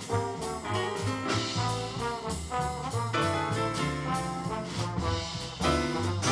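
Jazz big band playing a swing arrangement live, the brass section to the fore with trombones prominent, over bass and drums with a cymbal keeping steady time.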